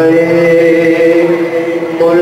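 A man's voice, amplified through a microphone, holding one long, steady sung note in unaccompanied devotional chanting (manqabat recitation).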